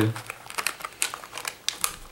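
Sealed anti-static plastic bag crinkling under the fingers as it is handled, in small irregular crackles.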